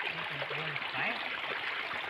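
Pot of shrimp ginataan (coconut-milk stew) at a rolling boil over a wood fire, bubbling steadily.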